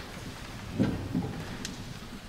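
People sitting down in wooden stalls, shuffling and handling books: two dull knocks a little under and just over a second in, a faint click near the end, and the rustle of service booklets being opened.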